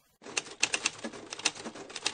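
Typewriter keys clacking in a quick, irregular run of strikes for about two seconds, then cutting off suddenly: a sound effect over a title card.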